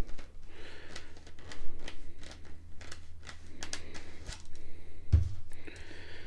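Clear plastic shipping tube being opened by hand and a rifle barrel slid out of it: scattered plastic clicks and scrapes, with a sharper thump about five seconds in.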